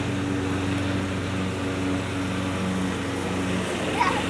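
A steady mechanical hum made of several held low tones, some of them pulsing slightly, over a faint hiss.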